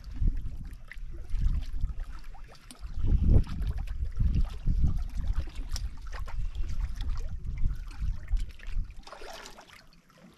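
Wind buffeting the microphone in uneven gusts, over small waves lapping against shoreline rocks.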